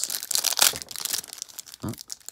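Foil wrapper of a hockey card pack crinkling and tearing as hands pull it open, a dense, irregular run of sharp crackles.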